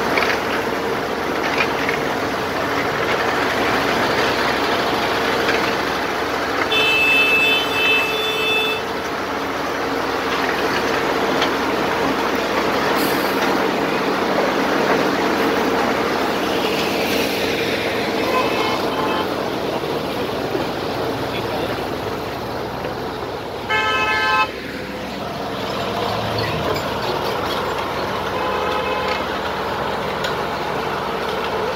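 Asphalt paver's engine running steadily with a continuous hum. A horn sounds twice, first about 7 seconds in for about two seconds, then briefly and louder about 24 seconds in.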